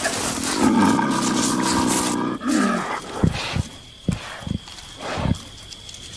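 Leopard growling in a low snarl lasting about two seconds, followed by several short, separate growls or knocks.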